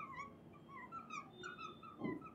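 Fluorescent marker squeaking faintly on a glass lightboard as it writes: a run of short, high chirps, several a second.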